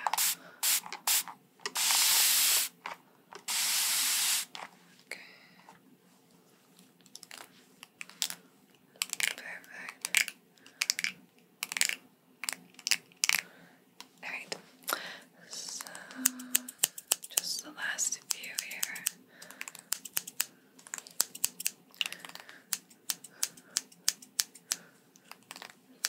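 A handheld spray bottle sprays twice in long hissing spritzes a few seconds in. Then comes a long run of quick, irregular scissor snips and clicks close to the microphone as hair is cut.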